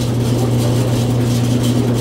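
Motor-driven corn grinding mill running with a steady low hum.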